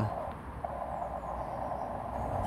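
Band noise hissing from a Xiegu X6100 HF transceiver's speaker as the receiver is tuned up through the CW end of the 15 m band. A faint CW tone passes through briefly, starting about two-thirds of a second in.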